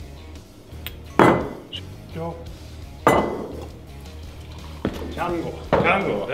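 Two sharp knocks with a brief ring, about two seconds apart, like glassware set down hard on a bar counter, over background music.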